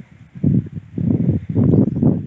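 Footsteps and rustling through grass and weeds between dry soil rows, uneven and close to the microphone.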